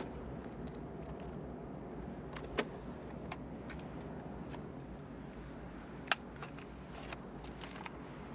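Steady car-cabin rumble while driving, with small plastic clicks and rattles as a cassette tape is handled and loaded into the dashboard tape deck. Two sharper clicks stand out, about two and a half seconds and six seconds in.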